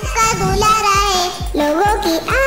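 Urdu children's cartoon theme song: a child's voice singing a long, wavering melody over music with a steady beat, a new phrase starting near the end.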